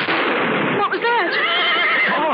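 Sound effect of a loud gunshot with a long reverberant crash, and a horse whinnying over it from about a second in, its wavering call falling away at the end.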